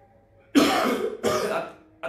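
A man clearing his throat: two short, harsh bursts in quick succession, starting about half a second in.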